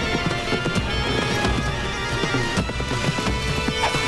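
A horse galloping, its hoofbeats quick and continuous, under a dramatic orchestral score.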